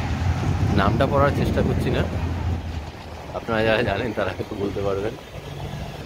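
Street traffic: a low vehicle rumble, heaviest in the first half and easing off, with voices talking over it.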